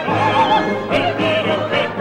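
Operatic soprano singing with a wide vibrato over an orchestra.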